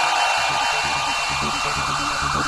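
Electronic dance music backing track in a quieter breakdown passage: a sustained high wash and steady tones, with a low pulsing beat coming back in about a second in.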